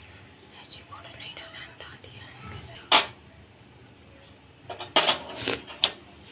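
Hushed background voices with a few sharp clicks: one about three seconds in and a quick cluster near five seconds.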